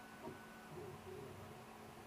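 Vector 3 3D printer at work, faint: its stepper motors give short whines of steady pitch as the print head moves, over a steady low hum, with a soft tap about a quarter second in.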